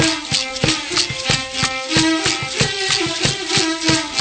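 Traditional Qom (Toba) music played live: a small bowed fiddle holds a melody over a steady hand-played drum beat of about four strokes a second, with rattles shaking along.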